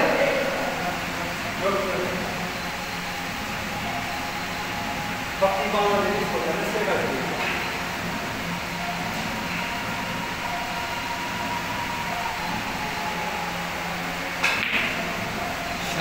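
Snooker balls clicking as shots are played: a sharp click about five seconds in and a louder one near the end, over low background voices.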